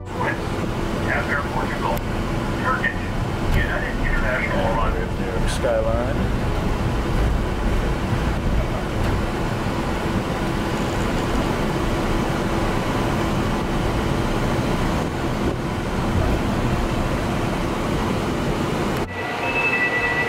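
Steady rumble and hum of an airport terminal, with indistinct voices in the first few seconds. Near the end the sound cuts abruptly to the rumble inside a train car.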